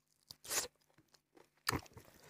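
Close-miked eating by hand: a mouthful of rice and pork curry being chewed, with a short loud mouth noise about half a second in and a sharp smack near the end.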